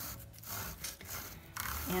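Plastic-bristle drain cleaning wand being pushed down a bathroom sink drain past the pop-up stopper, its bristles scraping the drain with a run of irregular scratchy clicks.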